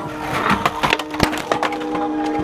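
Wooden skateboards clattering: about half a dozen sharp knocks and clacks of decks and wheels hitting hard ground, the loudest a little past the middle, over a steady held tone.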